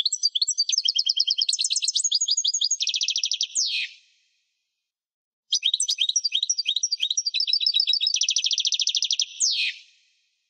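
European goldfinch singing two phrases of rapid, high twittering notes. Each phrase ends in a fast trill and a quick downward slur, with a pause of about a second and a half between them.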